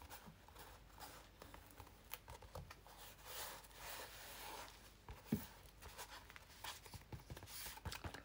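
Faint rustling and rubbing of hands pressing and smoothing glued fabric and paper down, with a few soft clicks.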